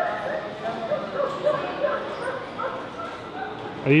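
Laughing Sal, an antique coin-operated animatronic arcade figure, playing her recorded laugh: a long, unbroken run of high, wavering laughter from the machine's speaker.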